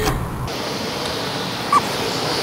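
A short laugh, then steady outdoor hiss with one brief rising squeak near the end, from a felt-tip marker being written on the car's painted panel.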